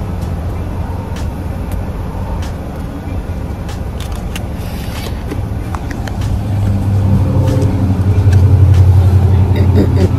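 Car engine running, heard from inside the cabin as a steady low rumble. Its low hum grows louder over the last three seconds or so.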